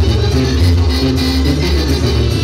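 Live band playing loud music, with a strong bass line moving under the melody.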